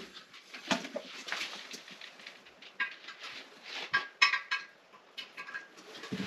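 Light clinks and taps of a toilet tank's metal bolts, washers and porcelain being handled while the tank is fitted to the bowl, coming at irregular intervals, a few of them with a brief ring.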